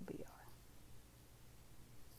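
Near silence: a steady low hum, with a faint breathy voice sound in the first half second.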